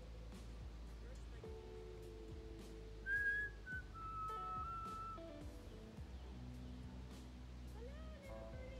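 A person whistling a slow tune of a few held notes that step downward in pitch, the loudest and highest note about three seconds in, with soft lower held tones underneath.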